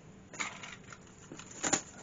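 Soft rustling handling noises as a bag and its strap are handled to hang a large Savoy cabbage for weighing, with one short rustle about half a second in and a louder one near the end.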